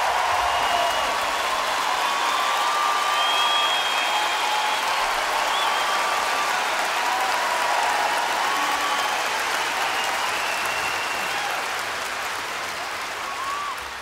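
Large live-concert audience applauding and cheering, with scattered whistles over the clapping; it fades down near the end.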